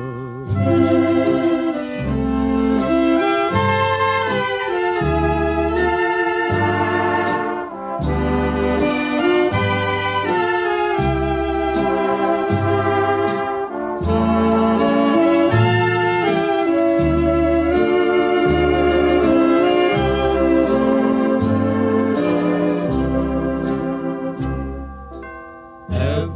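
Instrumental break of a 1940s sweet-style big band ballad, played from a 78 rpm record: held, vibrato-laden horn chords carry the melody over a bass note on a steady slow beat, with no singing.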